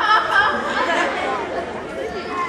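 Stage performers' voices: a sung line with wide vibrato trails off about half a second in, then several voices talk over one another.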